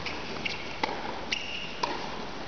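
Tennis shoes squeaking on a hard court as the player lunges and recovers. Three sharp knocks of racket strikes and ball bounces come about half a second apart.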